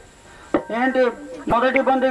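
Two sharp knocks about a second apart, each followed by a voice speaking.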